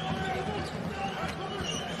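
Basketball being dribbled on a hardwood court, a few sharp bounces over the steady hubbub of an arena crowd.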